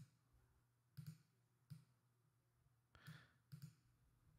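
Faint computer mouse clicks, about half a dozen, some in quick pairs, over near-silent room tone with a faint low hum.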